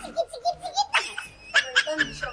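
A person laughing: a quick run of short ha-ha pulses, then louder, higher laughs from about a second in.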